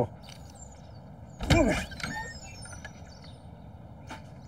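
Steady outdoor background ambience with faint, high bird chirps. About a second and a half in comes a short, loud vocal sound whose pitch bends.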